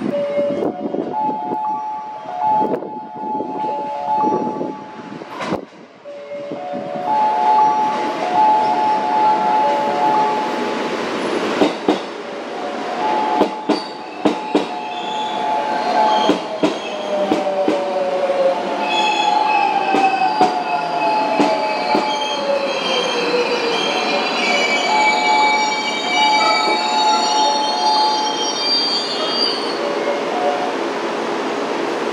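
JR West 207 series electric train pulling into a station and braking to a stop: wheels clicking over rail joints and the motors' electric whine falling in pitch as it slows. High brake squeal joins near the end.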